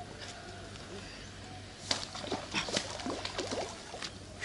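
A burst of splashing and slapping starting about two seconds in, as a large striped catfish is dropped back into the lake and thrashes at the water's edge.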